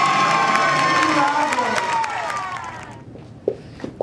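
Audience cheering and whooping at the end of a ballroom dance routine, loud at first and fading away near the end.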